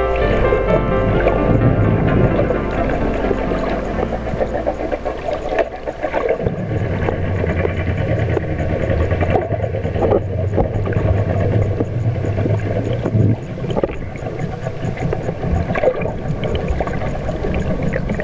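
Underwater water noise, gurgling and rushing around the camera, with background music fading out in the first second. A boat engine's low steady hum carries through the water from about six to thirteen seconds in.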